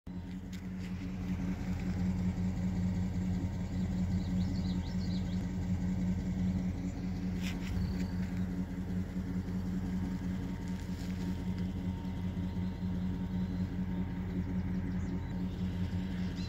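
A vehicle engine idling steadily, a constant low hum, with a few faint high chirps about four to five seconds in.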